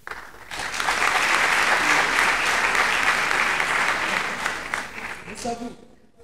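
Large theatre audience applauding, swelling within the first second, holding steady, then dying away near the end, where a voice is briefly heard.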